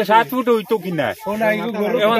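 Speech only: a man talking continuously, with a brief hiss of a sibilant about a second in.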